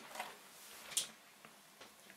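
Wooden tailor's clapper handled on pressed cloth: a short rustle of wood on fabric about halfway, with a few faint taps around it.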